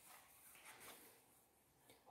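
Near silence, with a few faint handling sounds as the plastic pressure-washer trigger gun is worked by hand.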